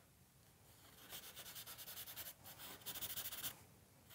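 Compressed charcoal stick scratching on drawing paper in quick, short hatching strokes, several a second, starting about a second in. The loudest run of strokes comes near the end.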